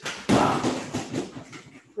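A gloved punch thumps into a freestanding Everlast punching bag about a quarter-second in, followed by a few lighter knocks and bare footfalls on foam mats.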